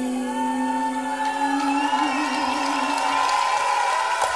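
A woman's singing voice holding one long final note of a song live into a microphone, wavering with vibrato near its end and stopping about three seconds in, as crowd cheering and whoops rise underneath.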